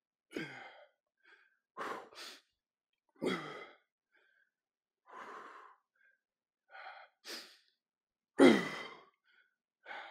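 A man breathing hard under exertion: short forceful breaths every second or so, with a louder voiced exhale, like a groan, about eight and a half seconds in.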